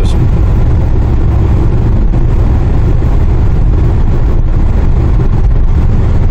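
Steady low drone of engine and road noise inside the cabin of a Daewoo Rezzo LPG minivan cruising at highway speed.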